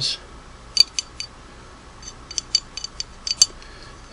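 Light metallic clicks and ticks from handling a Singer 301A sewing machine's nose cover and its hinge pins: about four clicks a second in, then a quicker run of clicks later on.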